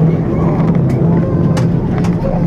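Cabin noise of an Airbus A340-300 taxiing after landing: a steady rumble from its four CFM56 engines at idle and the wheels rolling on the taxiway, with a low hum and a few sharp clicks.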